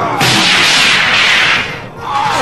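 A loud rushing whoosh sound effect for a fight-scene blast: it starts suddenly a moment in and dies away near the end.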